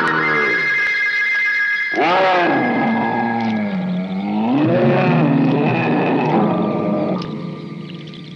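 Eerie electronic horror-film music: wavering wails that swoop slowly up and down in pitch over a few held high notes. It fades somewhat near the end.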